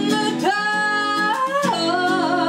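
A woman singing a long held note over a strummed acoustic guitar. The note swells in about half a second in and slides to a lower pitch near the end.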